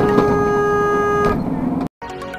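A car horn sounding one loud, steady blast of about a second and a half, a warning honk at a moped rider crossing the junction. A short stretch of low road rumble follows before the sound cuts off abruptly.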